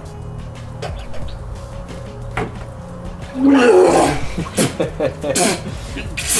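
A man lets out a loud, drawn-out roaring yell about halfway through, then several short cries, from the shock of ice-cold water around nine degrees.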